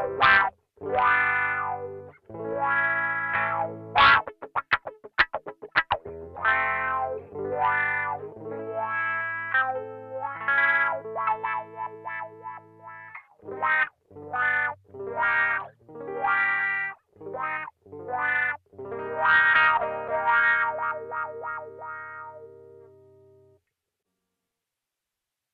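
Electric guitar played through the BOSS MS-3's wah effect alone: strummed chords and single notes, with a run of short choppy strokes about four seconds in, ending on a held chord that fades away just before the end.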